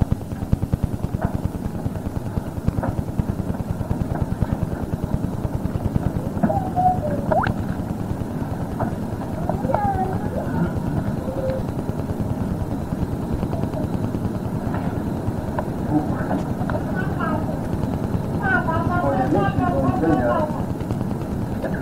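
A low, fast-fluttering rumble with faint, indistinct voices over it, heard on an old cassette recording.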